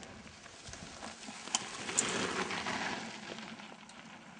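Mountain bike rattling and clattering as it descends a rough trail, tyres on loose ground, louder in the middle with two sharp knocks about a second and a half and two seconds in.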